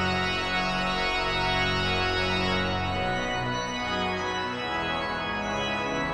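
The 1956 Aeolian-Skinner pipe organ, Opus 1275, playing full sustained chords over deep pedal bass notes. The pedal bass drops out about halfway, and the lower parts then move in shorter notes.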